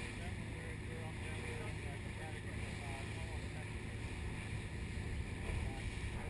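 Steady, muffled rumble and water noise of a small boat under way on open sea.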